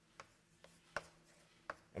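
Chalk tapping on a blackboard while drawing: about four short, faint taps spread across two seconds, the one about halfway the loudest.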